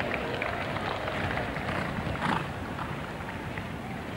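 A show-jumping horse cantering on turf, its dull hoofbeats heard over the steady noise of a stadium crowd, with one sharper noise a little over two seconds in.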